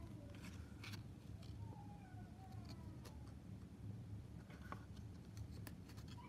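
Faint handling of baseball trading cards: light clicks and rustles as the cards are shifted against each other, over a low steady room hum.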